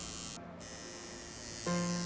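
Tattoo machine buzzing steadily as the needle works ink into skin, under a pop song playing; a sustained sung note comes in near the end.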